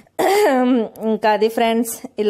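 A woman speaking in short phrases, opening with a brief throat-clearing sound just after the start.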